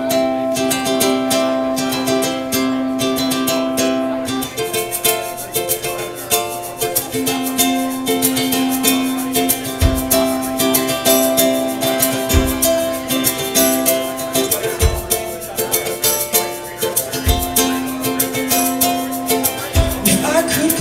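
Instrumental intro of a live indie-pop song led by a strummed ukulele, the chords changing every couple of seconds. From about halfway in, a low thump joins on every second and a half to two and a half seconds, marking the beat.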